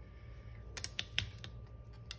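A handful of small sharp clicks about a second in, as a clear sticker overlay is pressed on and peeled back up off a paper planner page.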